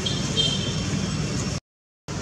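Steady low outdoor rumble with a few short high chirps, cutting off abruptly to silence near the end.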